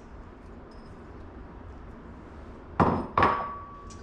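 Two sharp knocks of kitchenware against the slow cooker's ceramic crock, about half a second apart, the second leaving a brief ringing tone.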